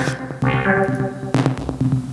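Tassman 4 software modular synthesizer playing a step-sequenced pattern: sequenced synth notes with sharp percussive drum hits about a second and a half apart.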